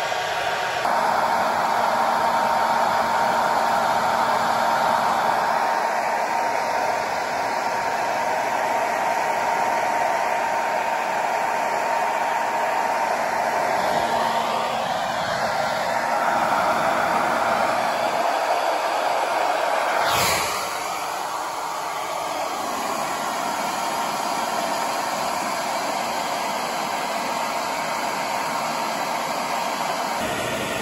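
Hand-held hair dryer running steadily, blowing warm air onto a wet guinea pig's fur, its airflow carrying a faint steady whine. About two-thirds of the way through there is a sharp click, after which it runs slightly quieter.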